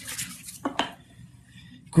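Two light taps in quick succession, over faint room noise.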